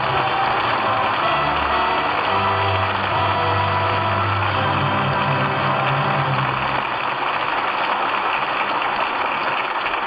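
Studio audience applauding over the orchestra's closing curtain music at the end of a radio play; the low orchestral notes drop out about seven seconds in while the applause carries on.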